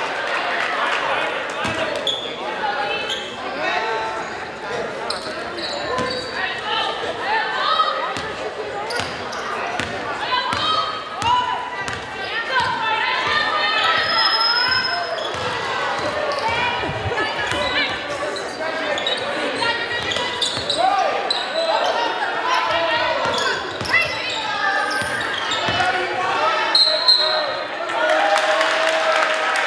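Many overlapping voices of spectators and players, none clear enough to make out, echoing in a large gymnasium, with a basketball bouncing on the hardwood floor.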